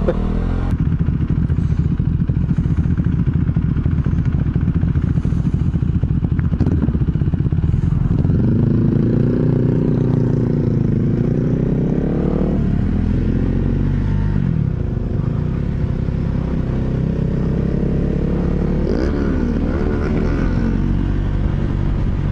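Motorcycle engine running under way, heard from the rider's helmet over a steady low rumble. Its pitch climbs and drops several times as the rider accelerates and changes gear, mostly in the second half.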